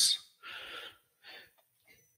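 A man's audible intake of breath close to the microphone, half a second long, followed by a shorter, softer breath.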